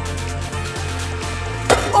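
Background music with a steady bass line, and about one and a half seconds in a single sharp smack as the pitched wiffle ball strikes the strike-zone target behind the plate.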